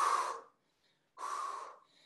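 A woman breathing hard from exertion during lateral hopping drills: two heavy breaths, about a second apart.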